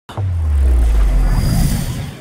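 Logo-reveal intro sound effect: a deep bass rumble that starts abruptly, with a high whoosh rising near the end as it fades out.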